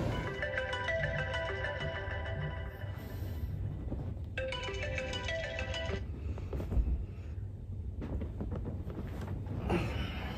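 Smartphone alarm ringtone playing a short melody, which breaks off about four seconds in, starts again, and stops about six seconds in.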